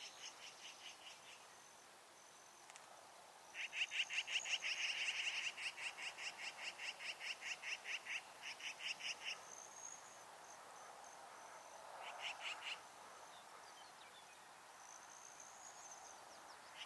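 A rapid, evenly pulsed high trill from a small animal, repeated in runs of a few seconds. The loudest run comes from a few seconds in to about halfway, with a short burst a little later.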